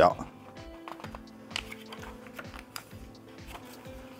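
A glossy paper magazine being handled and its page turned by hand, giving short papery clicks and rustles over soft background music with steady held notes.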